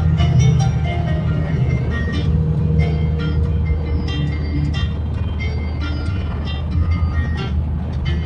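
Piano backing track playing with no vocals, over the steady low rumble of road noise inside a car driving at highway speed.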